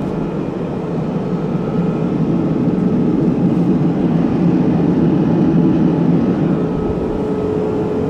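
Steady in-flight cabin noise of a Boeing 787 Dreamliner heard from inside the lavatory: a low rushing drone of airflow and engines with a faint steady hum through it, swelling slightly in the middle.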